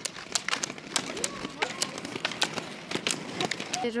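Ski-pole tips striking asphalt as a group of roller skiers pole along a road: a quick, irregular run of sharp clicks.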